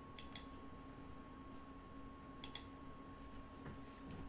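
Quiet room tone with a faint steady electrical hum and a thin steady whine. There are two brief pairs of faint clicks, one right near the start and one about two and a half seconds in.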